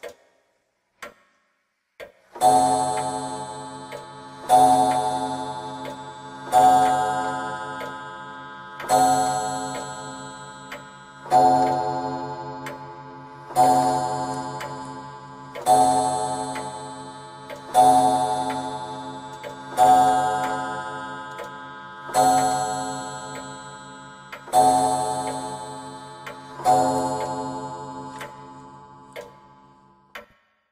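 A clock chime striking twelve slow strokes about two seconds apart, each ringing out and fading under the next. A few separate ticks come before the first stroke.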